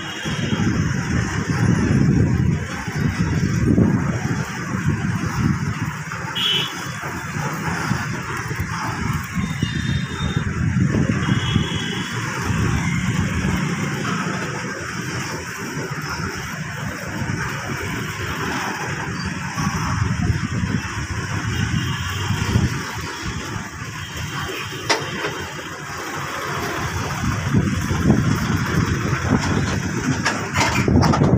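A freight train of open wagons passing close by, its steel wheels rolling and clattering over the rails in a steady rumble. A few brief high squeals sound over it, and it grows louder near the end as the wagons pass nearest.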